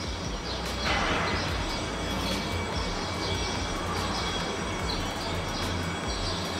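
Steady rumbling background noise that swells about a second in and holds.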